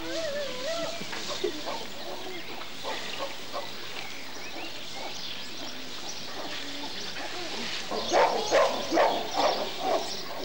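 Animal calls: scattered short pitched calls and glides, then a quick run of louder, rougher calls in the last two seconds.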